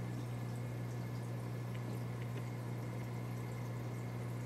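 Aquarium filter running: a steady low motor hum with faint trickling and dripping of water.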